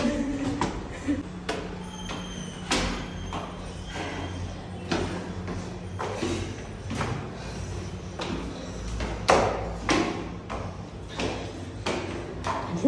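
Irregular knocks and taps, a sharp one every half second to second, over a low steady hum.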